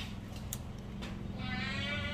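A dachshund whining: a thin, high-pitched whine that starts a little past halfway through, over a steady low hum.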